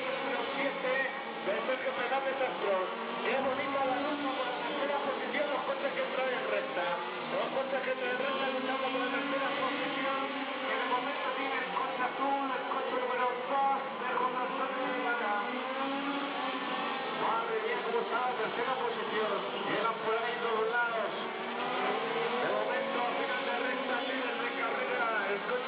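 Radio-control model racing cars running laps on a track, their motors' whine rising and falling as they pass, over a steady background of voices.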